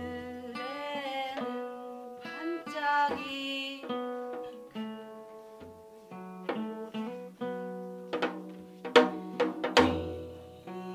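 Janggu, a Korean hourglass drum, struck with sticks in a loose rhythm over sustained pitched notes of guitar and a wordless melody; the drum strokes come thicker and loudest near the end.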